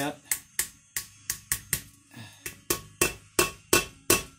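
Ball-peen hammer lightly tapping a new oil seal into the input shaft bore of a Peerless 2338 transaxle case. It gives a quick series of sharp metallic taps, about three a second, with a brief pause near the middle. The taps work the seal in evenly around its edge for a tight fit.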